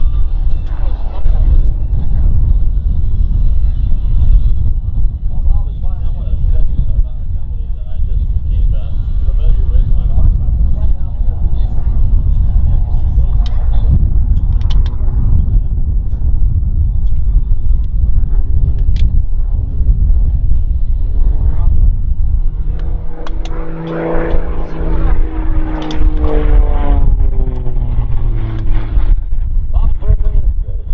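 Heavy wind buffeting on the microphone, loud throughout, with the Extra 330SC aerobatic plane's engine and propeller heard through it; about three-quarters of the way in the engine note comes through clearly and falls in pitch for several seconds.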